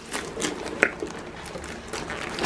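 Cardboard boxes scraping and rustling as they are worked out of a larger cardboard box, with several light knocks and one sharper tap a little under a second in.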